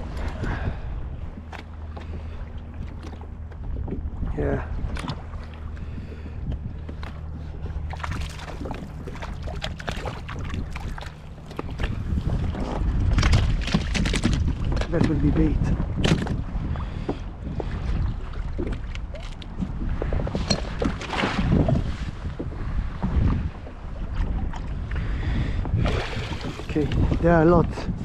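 Wind buffeting the microphone over open sea, with knocks, rustles and clatter of handling on a plastic fishing kayak as a hooked mackerel is landed and unhooked. The wind grows louder about halfway through.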